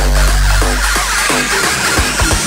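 Newstyle electronic dance music from a DJ mix: a long, deep bass note is held under repeated short synth notes, while a faint high sweep rises at the top.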